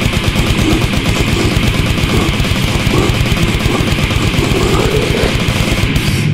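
Brutal death metal recording: very fast, machine-gun-like drumming under distorted guitars and bass, dense and loud.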